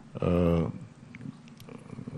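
A man's drawn-out hesitation sound, one held flat-pitched vowel of about half a second, then a brief pause.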